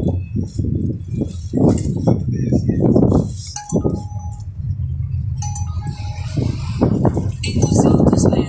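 A car's low, steady rumble heard from inside the cabin while driving slowly, with indistinct voices over it. Two brief high tones sound near the middle.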